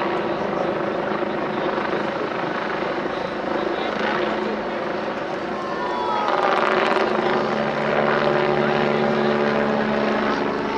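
Military helicopter flying overhead, its rotor and turbine engines running steadily. About six seconds in the sound grows louder with a rush of noise as the helicopter fires a burst of flares.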